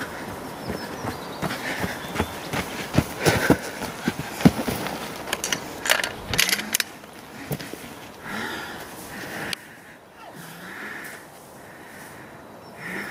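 Footsteps and clattering gear of a running shooter for about the first six seconds. Then quieter rifle handling as he lies prone, with hard breathing, a breath every second or two, as he is out of breath from the run.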